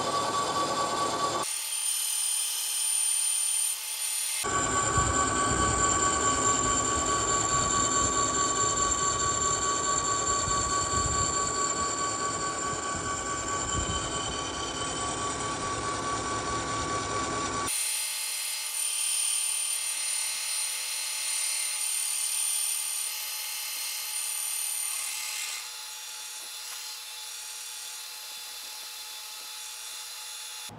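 Insert face mill on a vertical milling machine taking a facing pass across the base of a dividing-head tailstock: the spindle runs steadily with a high whine and cutting noise. The sound changes abruptly several times and is loudest in the middle stretch, then quieter over the last few seconds.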